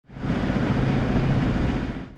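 A vehicle engine running steadily, with a rushing background. The sound fades in at the start and cuts off at the end.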